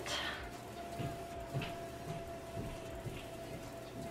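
Quiet room tone with a steady faint tone, and a few soft faint dabs of a makeup brush working concealer into the skin under the eye.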